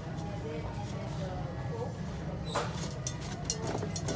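Steady low hum of a store's heating blower, which is loud in the room. Light clicks and taps come from spray cans being handled on a shelf, about two and a half seconds in and again near the end, with faint voices in the background.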